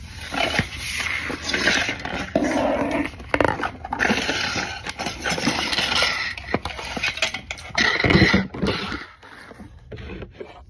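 Things being rummaged through and dragged about under a bed, in irregular scraping and rustling bursts with scattered knocks.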